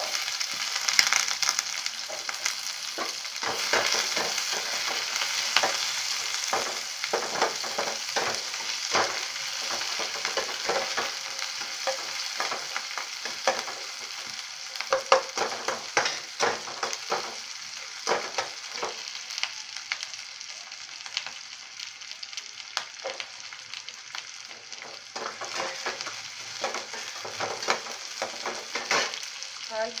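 Chopped onions sizzling in hot oil in a frying pan, the sizzle starting all at once as they go in, then easing off slowly. Throughout, a spatula stirs and scrapes them against the pan, making frequent short scrapes and clicks.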